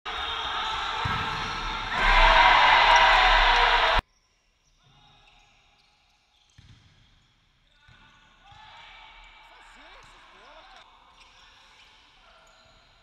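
Indoor futsal court sound: a loud, dense crowd noise in the arena that swells about two seconds in and is cut off abruptly at about four seconds. After that come faint court sounds: ball thuds on the floor and players' voices.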